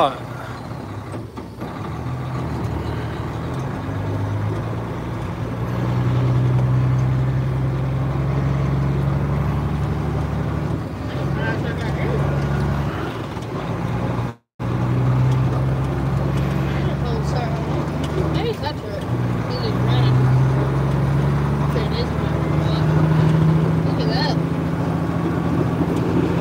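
Heavy truck's diesel engine heard from inside the cab while driving slowly on snow, running steadily with its pitch rising and falling several times as the throttle changes. The sound drops out briefly about halfway through.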